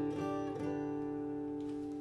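Flat-top steel-string acoustic guitar: a chord strummed just before, left ringing and slowly fading, with a light plucked note or two within the first second.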